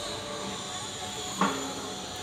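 Steady outdoor background noise with faint steady high tones, broken about a second and a half in by a short voice-like call.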